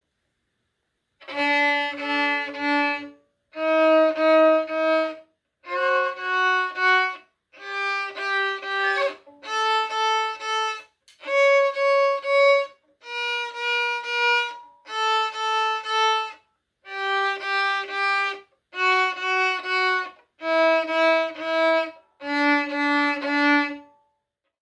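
Violin played slowly up and down a one-octave D major scale, each note bowed as several short repeated strokes with a brief pause before the next note. The pitch climbs step by step, then steps back down to the low D it began on.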